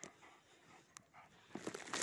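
Faint sounds of several dogs crowding close, with a sharp click about a second in and a rustling noise that grows louder in the last half second.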